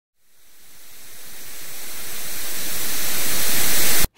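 A steady hiss of static-like noise swelling smoothly from silence to loud, then cutting off abruptly.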